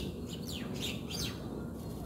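A bird chirping: several short calls, each sliding down in pitch, clustered in the first half.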